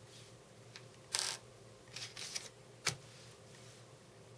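Thin plastic magnetic viewing film being handled and laid onto a flexible magnet sheet: a short rustling swish about a second in, two shorter scrapes around two seconds, and a sharp tap near three seconds.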